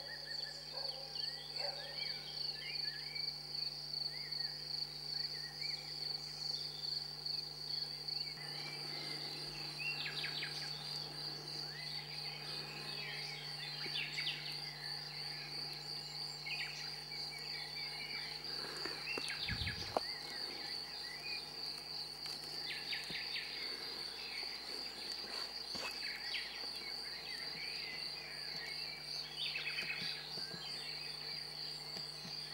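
An insect trilling steadily at a high, even pitch, with scattered bird chirps and snatches of song over it, and one sharp click about two-thirds of the way through.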